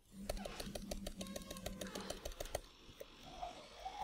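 Computer keyboard typing: a quick, even run of keystrokes, about six a second, that stops about two and a half seconds in.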